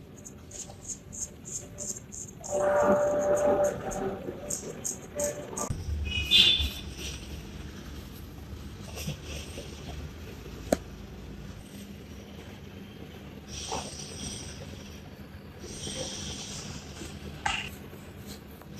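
Close-miked grooming sounds: rapid soft scratching and rubbing of a cotton pad in and around a man's ear, then quieter swishes of hands rubbing over his face.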